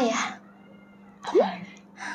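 A woman's voice finishes a spoken word at the start, then about halfway through makes a short whiny vocal sound that sweeps sharply up in pitch and falls back, as she hesitates over a lyric. A steady low hum runs underneath.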